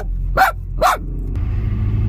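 Small dog barking twice in quick succession, about half a second apart, inside a car cabin over the low hum of the car.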